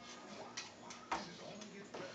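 Irregular taps and clicks on a wooden folding tray table as a blue-and-gold macaw moves about on it, the loudest a little over a second in.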